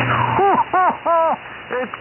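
Voice heard over single-sideband HF amateur radio, thin and cut off above about 3 kHz: a brief hum and hiss as the signal comes in, then several short syllables with gaps between them.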